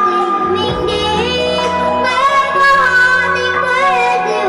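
A young girl singing a song into a microphone, amplified, over instrumental backing, with held notes that waver with vibrato.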